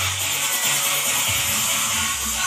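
Live band music played loud through a stage sound system, with a bass line under a dense mix.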